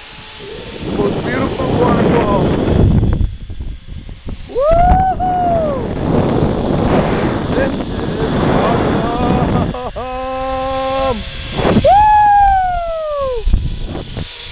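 Zip-line ride: wind buffeting the microphone and the trolley running along the cable, with two long whooping yells that rise and fall, about five seconds in and near the end, and a steady held tone for about a second just before the second yell.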